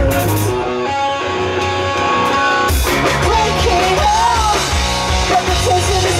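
Pop-punk band playing live and loud. About half a second in, the drums and bass drop out, leaving sustained electric guitar chords ringing on their own. Just before three seconds the full band with drums and crashing cymbals comes back in.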